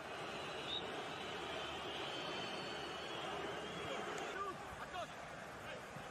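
Steady stadium crowd noise from a football broadcast, artificial crowd sound laid over a match played before empty stands, with a few faint shouts from the pitch.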